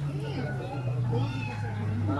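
Tiger cub vocalizing with a low, steady growl, with people talking in the background.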